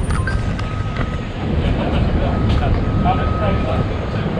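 Outdoor city ambience: a steady low rumble of traffic, with faint voices and a faint thin high tone that comes in twice.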